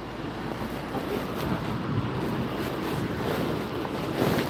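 Wind rushing over the microphone of a handheld phone: a steady noisy rumble with no distinct events.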